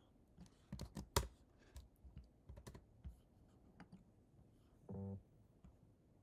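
Typing on a computer keyboard: a run of irregular key clicks through the first three seconds, one sharper than the rest about a second in. A brief low tone follows about five seconds in.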